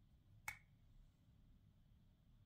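A single short, sharp click about half a second in, otherwise near silence.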